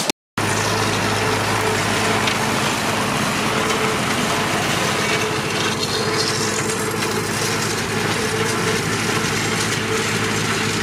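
An Ursus tractor's diesel engine runs steadily under load while it drives a rotary hay mower through standing grass. The sound begins a moment in, after a brief silence.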